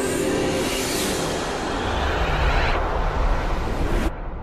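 Title-sequence whoosh sound effect: a noisy rushing swell that sweeps through the highs over a building low rumble. The high rush cuts off suddenly at the end.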